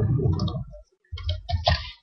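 A few computer keyboard keystrokes clicking as code is typed, the clicks falling in the second half.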